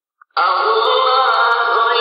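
Chanted singing starts abruptly about a third of a second in, then continues as long held notes that glide slowly in pitch.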